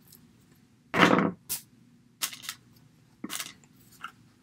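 Hand snips cutting through the thin plastic legs of a miniature doll table: a few sharp snaps and clicks, the loudest about a second in.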